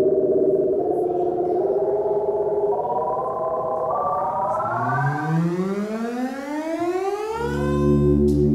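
Minimoog Voyager analog synthesizer sounding several oscillators together, its pitch stepping upward note by note, then sweeping up in one long rising glide. Near the end a new, low steady note comes in.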